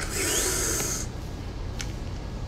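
A person sniffing hard through the nose once, for about a second, with a faint rising whistle in it, while tearful.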